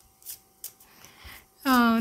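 Tarot cards shuffled by hand: a few short, soft swishes of cards sliding against each other, then a longer rustle. A woman's voice begins near the end.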